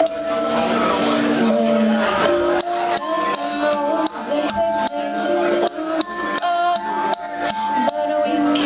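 Live toy-pop music played on a set of colourful desk bells: from about two and a half seconds in they are struck in a quick, even run of bright ringing notes over a melody.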